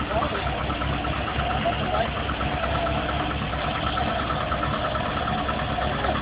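Engine of a long-dormant Jensen sports car running steadily at a low idle as the car creeps backwards under its own power, its first run in over 15 years.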